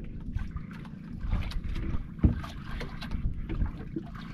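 Water and wind noise around a small wooden outrigger boat at sea, with wind buffeting the microphone and scattered small clicks. A single sharp thump about halfway through.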